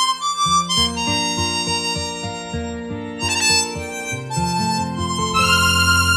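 Chromatic harmonica (a Tower chromatic) playing a sustained melody over backing music. The backing has a run of repeated low notes that comes in about half a second in.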